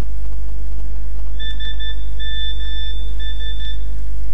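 High, steady-pitched electronic beeping in three bursts, starting about a second and a half in, over a steady low electrical hum.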